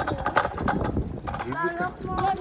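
A rapid, irregular run of sharp clacking knocks, with a short burst of a voice near the end.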